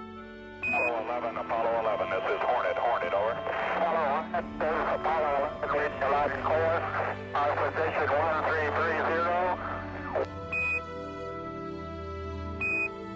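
Voices over a radio link, not intelligible, over background music. Short high beeps mark the start and end of the transmission, like NASA's Quindar tones.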